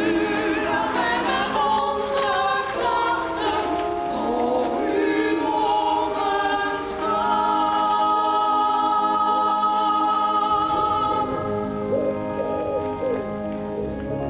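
A choir singing; from about eight seconds in the voices hold long, steady notes, with one high line sustained.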